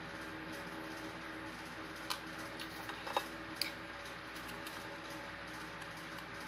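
Light clicks of a plastic spoon against plastic containers as sugar is scooped and measured, three sharp ones about two, three and three and a half seconds in, over a steady low hum.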